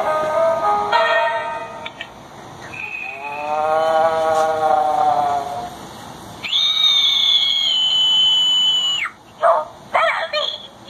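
The sound chip of an LED Halloween wall canvas, heard through its small speaker, playing spooky effects: first a short run of tinny musical notes, then a howl-like tone that rises and falls. Near the end comes a long high-pitched wail that slowly drops in pitch and cuts off suddenly.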